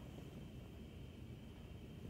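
Faint, steady room tone: a low hum and hiss with no distinct sounds.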